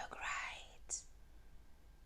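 A person muttering in a breathy whisper for the first half second or so, then a single short sharp tick about a second in, followed by faint room tone.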